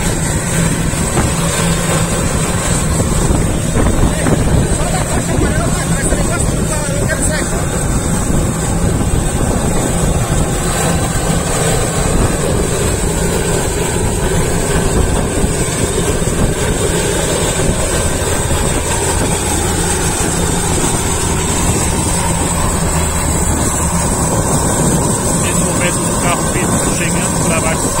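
Turboprop engine of an Air Tractor fire-fighting aircraft idling steadily while it is refuelled, with a constant high turbine whine over a low hum.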